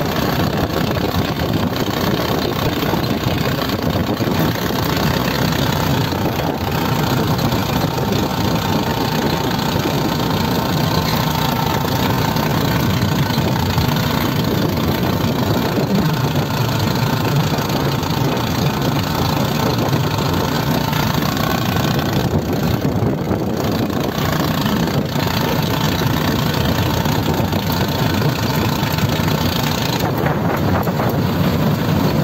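A vehicle's engine running steadily while driving along a road, mixed with road and wind noise.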